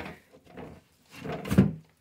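Handling noise and a knock, about a second and a half in, like a drawer or cabinet door, as the discarded packet of hair color remover is retrieved from the trash.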